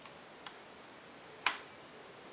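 Two clicks from a screwdriver and hard plastic parts being handled on an opened laptop's chassis: a faint one about half a second in, then a sharp, louder one near the end.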